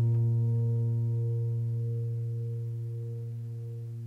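Background piano music: one low chord held and slowly dying away.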